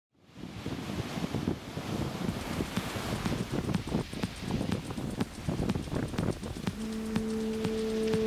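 Sea surf and wind, a rough uneven rushing noise. Music with held notes comes in during the last second or so.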